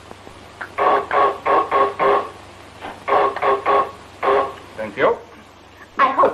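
Electric service buzzer rung over and over in quick runs of short buzzes, then a couple of single buzzes: someone impatiently ringing for the maid, who ignores it.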